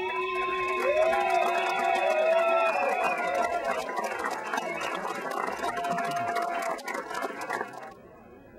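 A singer's long final held note, with a crowd clapping and cheering over it; the applause runs on after the note ends at about three seconds and cuts off abruptly near the end.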